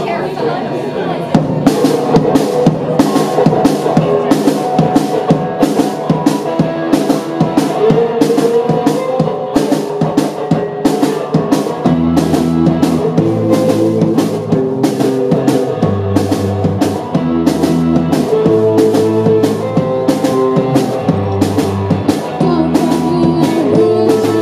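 Live rock band playing: a drum kit with snare, floor tom and cymbal keeps a steady beat under electric guitar from about a second in. A deep electric bass line joins about halfway through.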